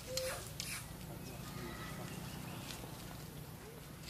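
Macaque monkey calls: a short squeal right at the start, then fainter high calls, with two brief sharp noises in the first second.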